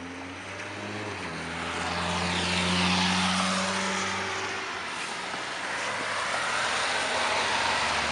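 A vehicle passing on a wet, slushy street: engine hum and tyre hiss swell to a peak about three seconds in, then fade, and traffic noise builds again near the end.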